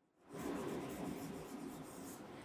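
A stylus scratching across the screen of an interactive smart board as a word is handwritten. The writing starts about a third of a second in and runs as an even, scratchy rubbing.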